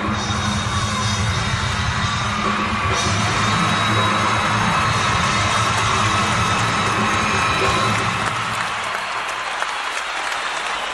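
Live rock band playing with a concert crowd cheering and yelling over it; the band's low end drops away near the end, leaving mostly crowd noise.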